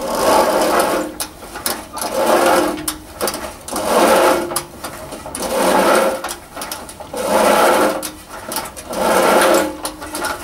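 A manual push cylinder (reel) lawn mower cutting grass in six pushes about two seconds apart. Each push is a whirring clatter from the spinning blade reel, and it fades in the pause between strokes.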